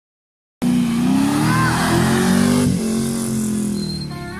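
A vehicle engine revving, starting abruptly about half a second in, its pitch climbing for about two seconds, then dropping and running on more steadily.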